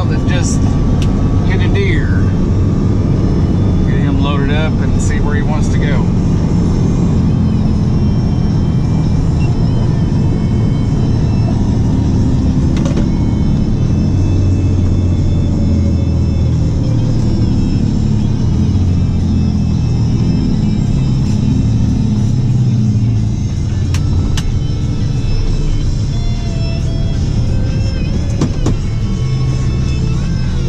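Steady engine and road drone inside the cab of a Freightliner M2 rollback tow truck driving at road speed, with music playing over it.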